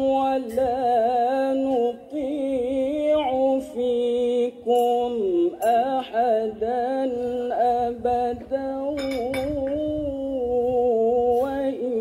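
A man reciting the Quran in the melodic tilawah style into a microphone, holding long ornamented notes that waver and slide in pitch, with a few brief breaks for breath.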